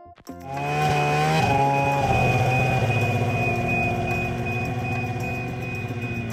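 Polaris snowmobile engine revving up about half a second in, then running steadily at a high, even pitch.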